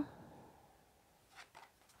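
Near silence in a small room, with a faint, brief rustle of tarot cards being handled about one and a half seconds in.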